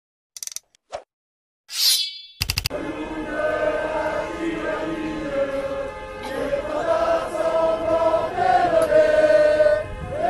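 A few short clicks and a bright swish from an intro sound effect in the first two seconds. Then a large crowd of protesters chants in unison, holding long sung notes.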